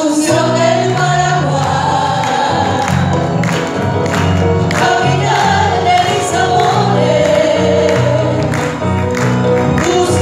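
Several women singing a Paraguayan folk song together, live, backed by a band of Paraguayan harp, electric guitars, bass, keyboards and hand drums keeping a steady beat.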